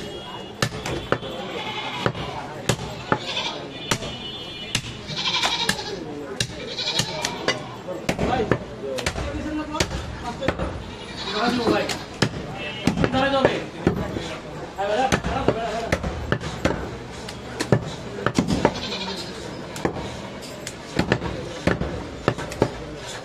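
Heavy cleaver chopping goat meat on a wooden log chopping block: repeated sharp strikes at an irregular pace. Goats bleat and people talk in the background.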